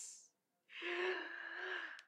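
A woman's breathy gasps of delight. An excited exclamation fades out at the start, then a breathy sound held at one steady pitch lasts just over a second.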